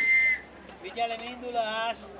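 A conductor's whistle blown in one long, steady high note that stops about half a second in, signalling the mini train's departure. A voice follows briefly in the second half.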